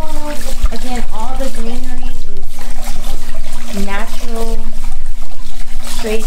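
Water trickling steadily from a fountain bowl into a small pool, under a person's voice that comes and goes, with a steady low hum.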